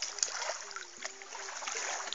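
Light water sloshing and small splashes as a hand landing net is dipped into a river to release a small fish.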